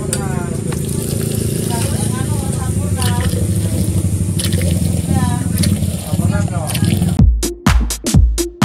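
A steady low hum with a few short high chirping sounds. About seven seconds in, electronic dance music with a thumping kick-drum beat comes in loudly.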